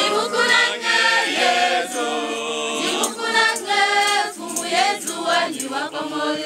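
Church choir of mixed voices singing together in parts.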